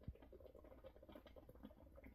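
Near silence, with faint irregular gulps and small clicks of drinking from a shaker bottle, and one soft low thump just after the start.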